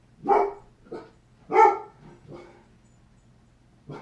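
A dog barking: two loud barks about a second and a half apart, softer barks between them, and a short one near the end.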